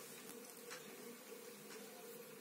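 A faint, steady hum with a couple of soft clicks.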